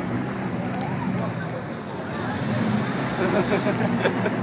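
Street traffic noise with a car engine running nearby, getting louder in the second half, with voices in the background.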